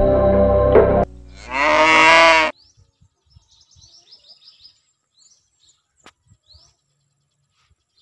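A cow moos once, loudly, for about a second, and the call cuts off suddenly. Background music stops just before it, and faint, high bird chirps follow.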